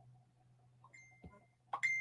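A high ringing tone, like a chime or clink, sounds faintly about a second in. Near the end it comes again louder after a click and fades away, over a low steady hum.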